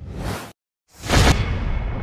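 Whoosh sound effects of an animated title intro: one cuts off about half a second in, and after a short gap a louder whoosh hits and dies away slowly.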